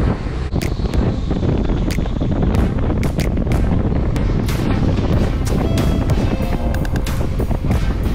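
Loud wind buffeting the microphone on a moving scooter, a continuous low rumble broken by irregular crackles, with road and engine noise and music mixed in.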